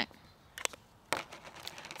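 A metal fork clicking and scraping inside a small open tin can of worms: two sharp clicks, about half a second and a second in, then a few faint ticks.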